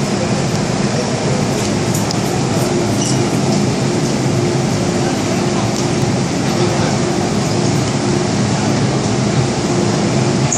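Steady hum of a stationary MTR M-Train at an underground platform with its doors open, mixed with the chatter and footsteps of passengers getting on and off.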